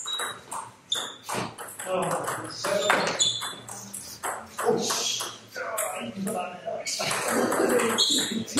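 Table tennis rally: a ball repeatedly clicking off the bats and bouncing on the table in short sharp knocks, with people's voices talking in the hall over it.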